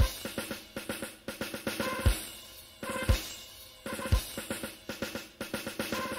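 Background music led by a drum kit: a deep bass-drum hit about once a second, with quick rolls of snare and tom strokes in between.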